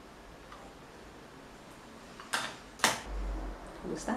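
Two sharp clicks about half a second apart, followed by a brief low rumble.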